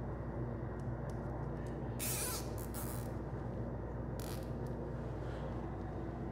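Nylon zip ties being pulled tight by hand, each giving a short ratcheting zip: two about two seconds in, close together, and a third about four seconds in. Under them runs a steady low hum from the walk-in cooler's evaporator fan unit.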